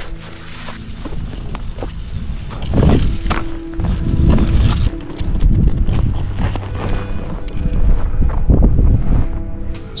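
Background music under strong, irregular gusts of wind buffeting the microphone, loudest from about three seconds in until near the end.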